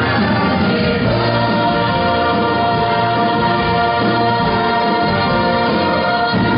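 Musical-theatre cast singing in full chorus over musical accompaniment, holding one long sustained final note.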